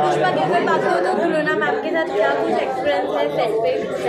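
Many people talking at once: a steady babble of overlapping voices in a large, echoing hall.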